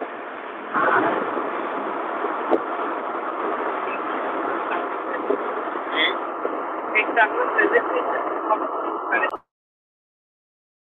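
Background noise coming through an unmuted Zoom participant's microphone, thin and narrow like a phone line, steady with scattered clicks and ticks. It cuts off suddenly near the end.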